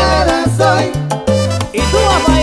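A salsa orchestra playing live, with a bass line stepping from note to note under the band.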